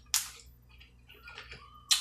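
A crisp bite into a raw cucumber slice just after the start, followed by faint chewing and small mouth clicks.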